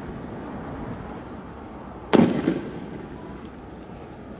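A single loud bang from a riot-control round fired by security forces, about two seconds in, dying away in a short echo.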